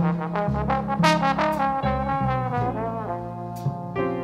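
Jazz ensemble music in a slow ballad: brass horns, with trombone and trumpet most prominent, hold sustained melody notes over a moving bass line.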